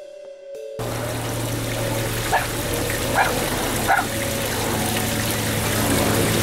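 A few electronic music notes cut off about a second in. Then comes the steady rush of water running down a shallow open drain, with a low hum, and three short sharp calls at even spacing.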